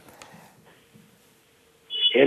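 Near silence on a live remote call line, with a faint steady tone in the second half.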